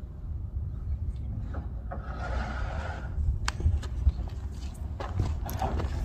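Outdoor construction-site ambience: a steady low rumble of wind on the microphone, with a few sharp knocks about halfway through.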